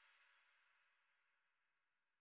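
Near silence, with only a faint hiss fading away in the first second.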